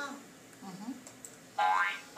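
Electronic sound effect from an English-learning computer program: a short pitched glide rising in pitch, starting about one and a half seconds in.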